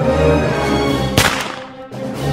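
Dramatic soundtrack music with held tones, cut by one sudden, sharp sound effect a little over a second in. The music drops in level after it.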